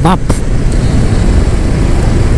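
Kawasaki Vulcan S 650's parallel-twin engine running steadily while cruising at about 55–60 km/h, mixed with riding wind and road noise.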